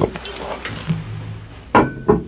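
Handling noise from someone shifting and moving at a desk close to the microphone, with a sharp knock near the end.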